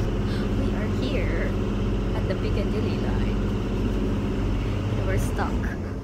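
Steady low hum of a London Underground train carriage heard from inside, with faint voices over it; the hum drops away at the very end.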